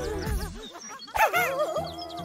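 Cartoon sound effects of small fluffy creatures making high, bouncy squeaks and yips, with a louder burst a little past halfway, over children's background music.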